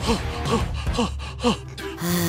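A man sobbing in short, falling gasps, about five in a row that grow fainter, over background music.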